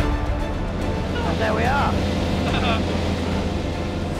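Light aerobatic aircraft's piston engine and propeller droning steadily in the cockpit during the pull-out from a spin. A brief voice exclamation, heard over the intercom, comes about a second in.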